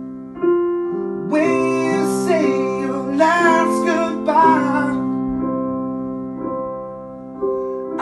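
Karaoke piano backing track playing sustained chords. A man's voice sings a held, wavering line from about one second in until about five seconds in, then the piano carries on alone.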